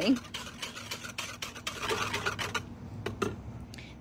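Wire whisk stirring cornstarch into water in a plastic pitcher: a quick run of light clicks and scrapes of the whisk against the plastic, with the liquid swishing.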